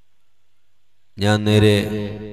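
A man's voice comes in about a second in with one long, steady, chant-like held syllable that then trails off.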